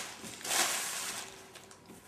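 A thin plastic bag rustling briefly about half a second in as it is handled and set down, then fading to faint handling sounds.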